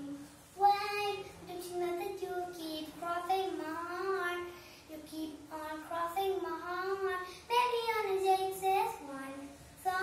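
A young girl singing solo without accompaniment, in sung phrases with short breaths between them.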